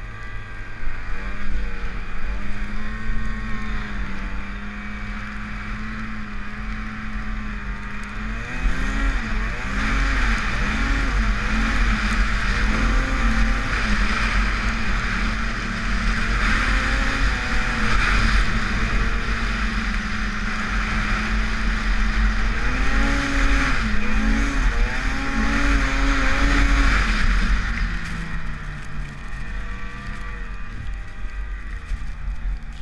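Arctic Cat M8000 snowmobile's 800 two-stroke twin engine, heard from the rider's helmet, revving up and down as it ploughs through deep snow. It gets louder about nine seconds in, and the revs drop off near the end.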